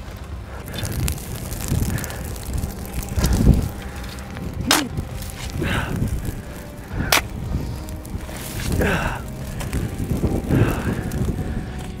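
Shovels scooping and scraping dirt to smother a burning grass fire, coming in uneven bursts every couple of seconds, with two sharp knocks. Behind them runs a steady rush of wind on the microphone.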